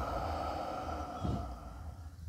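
A long, slow exhale of breath close to a handheld microphone, fading over about a second and a half.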